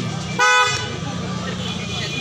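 A vehicle horn sounds once in a short blast, about a third of a second long, a little under half a second in, over a steady low hum.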